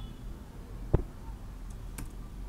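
A single sharp keystroke on a computer keyboard about a second in, over a faint steady room hum.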